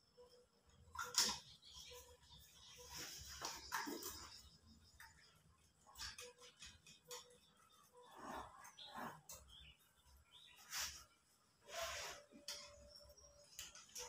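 Faint, irregular clicks and scrapes of hands and a screwdriver working a wall switch into its box, the sharpest click about a second in.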